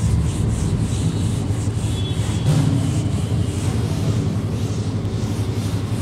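Handheld whiteboard eraser rubbed back and forth across a whiteboard, wiping off marker writing in a steady run of strokes.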